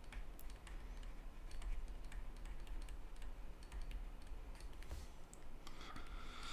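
Faint, irregular light clicks and taps of a stylus on a tablet screen while words are handwritten, over a low steady hum.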